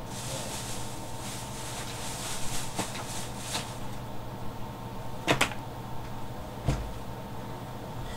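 Off-camera rummaging and handling of objects: rustling for the first few seconds, then a few sharp knocks, the loudest about five seconds in, over a steady low hum.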